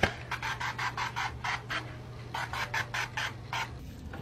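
Quick rhythmic rustling strokes, about five a second, in two runs with a short pause in the middle, over a steady low hum: fabric of a long-sleeved top being pulled on and adjusted.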